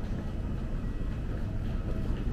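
Airport terminal ambience: a steady low rumble of background noise.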